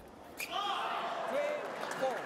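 One sharp click, then the arena crowd shouting and cheering, several voices calling out over a steady din, as a table tennis point is won.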